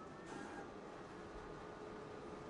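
Graphtec vinyl cutter's motors running faintly as it moves the media, a few thin steady tones after a short hiss about a quarter second in.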